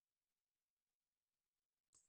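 Near silence, with one very faint short click near the end.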